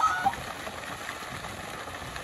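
Steady hiss of water spray falling from pond fountains, with a brief pitched call right at the start.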